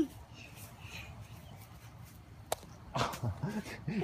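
Quiet background, then a single sharp click about two and a half seconds in. A person's voice starts up near the end.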